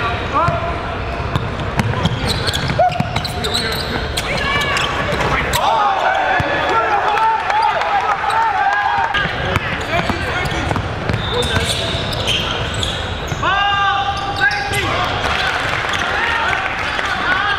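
Basketball being dribbled on a hardwood gym floor, with repeated sharp bounces, sneakers squeaking in short bursts, and spectators and players talking and calling out, all echoing in a large hall.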